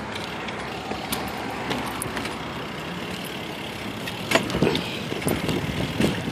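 A BMX bike rolling over pavement: a steady rushing noise with scattered knocks and rattles, and a cluster of louder knocks about four to five seconds in.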